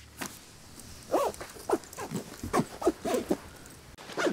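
A camera backpack being opened and packed: a series of short zip pulls and strap-and-buckle handling sounds, each a quick sweep in pitch.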